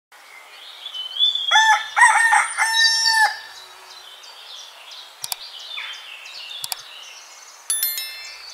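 A rooster crowing once, a cock-a-doodle-doo starting about a second and a half in, with its last note held. Faint bird chirps sound around it, and a short high chime comes near the end.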